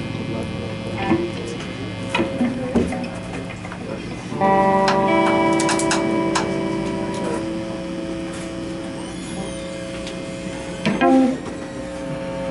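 Electric guitar through an amplifier: a few light plucks, then a chord struck about four seconds in that rings for about three seconds and fades, over a steady amplifier hum. A short louder sound comes near the end.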